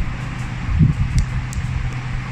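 A steady low mechanical hum with a hiss over it, with a few soft knocks from handling a handheld light source near the middle.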